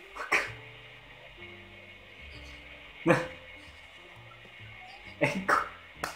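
A man laughing in short explosive bursts, three times, the last a double burst near the end, over soft background music with held notes.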